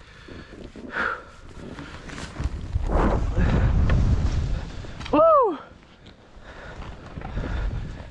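Skis rushing over snow with wind blasting the microphone, swelling to its loudest from about two and a half to five seconds in. A single short shout that falls in pitch comes about five seconds in.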